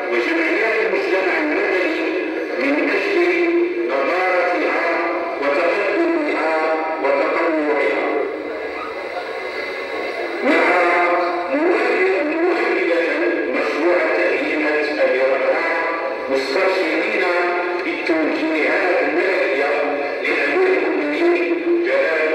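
Singing with music: a voice holds long, wavering melodic lines. It sounds thin and tinny, with no bass.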